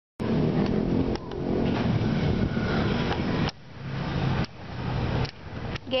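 Street traffic noise: vehicle engines running along a road, a steady low hum with a few faint clicks. It drops away abruptly twice and comes back.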